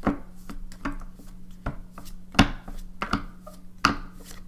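A deck of large oracle cards being shuffled by hand: a string of irregular, sharp card slaps and clicks, with a couple of louder ones about two and a half seconds and near four seconds in.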